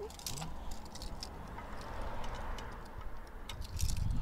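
Faint, scattered small clicks of a wheel-clamp lock and its key being handled, over a soft background rush that swells and fades in the middle.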